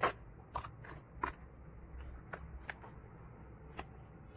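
Scissors snipping through craft paper, about six separate cuts at an uneven pace, over a low steady hum.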